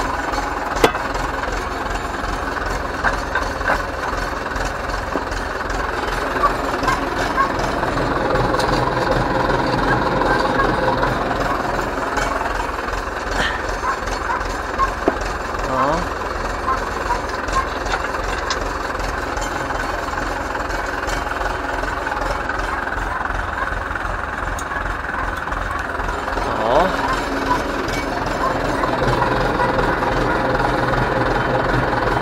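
Ursus C-360 tractor's four-cylinder diesel engine idling steadily, with a few short metallic clinks as steel hitch parts are handled.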